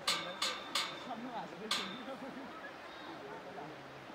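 Faint voices talking, with four short, sharp high-pitched sounds in the first two seconds standing out above them.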